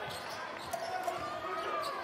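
Live game sound from an indoor basketball court: a ball being dribbled over a steady crowd murmur and players' voices.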